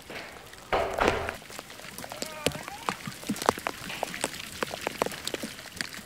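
Rain falling outside an open door, a steady hiss with scattered drops ticking, and a louder rush of noise about a second in.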